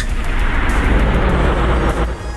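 Videotape static sound effect for a VHS tracking glitch: a steady noisy hiss over a heavy low rumble, which drops away at the end.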